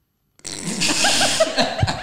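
A loud burst of laughter starting about half a second in, short rapid 'ha' pulses over a breathy, spluttering hiss on the microphone.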